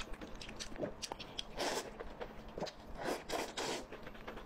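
Close-miked eating: chewing a mouthful of saucy, broth-soaked meat, with wet clicking mouth sounds and louder noisy bursts about one and a half seconds in and again near the end.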